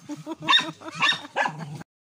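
Dogs yipping and whining in a run of four or five short, uneven calls while at an opossum they have killed. The sound cuts off suddenly just before the end.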